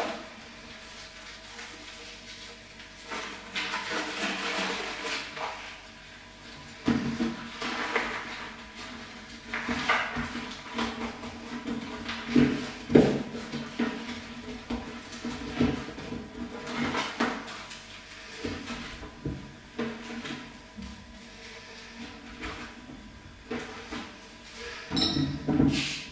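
Paper coffee filters rustling and crinkling as they are handled and folded, with scattered light knocks on a tabletop, over faint background music.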